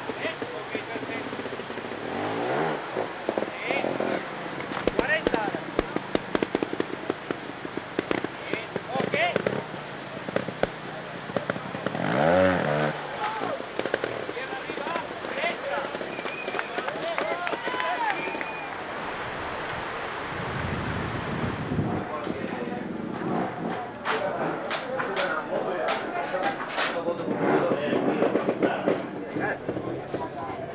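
Spectators shouting and calling out over a trials motorcycle's engine, which revs in short sharp bursts as the rider works up a rock section. The loudest shouts come about two and twelve seconds in, over a steady hiss of rushing water that stops about two-thirds of the way through.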